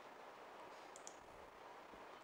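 Near silence: faint room hiss, with a faint double click about a second in.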